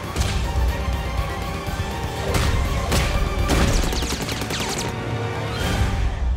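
Dramatic trailer music over heavy bass, punctuated by several sharp crashing hits and whooshes.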